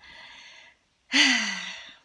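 A woman breathes in audibly, then lets out a loud, breathy sigh that falls in pitch.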